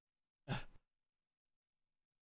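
A man's single short, sigh-like laughing breath about half a second in, lasting about a third of a second.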